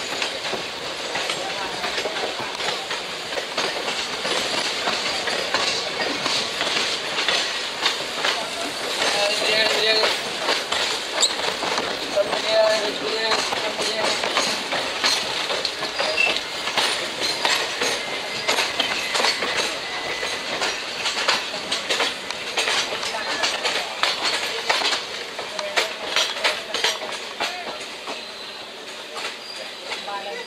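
Wheels of a moving Indian Railways passenger train clattering over rail joints and points, heard loud through an open coach doorway, with a few brief wheel squeals midway. The clatter eases slightly near the end.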